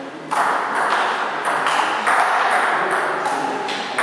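Table tennis ball knocked back and forth in a rally, a quick series of sharp clicks off the bats and the Cornilleau table, about two a second, starting about a third of a second in.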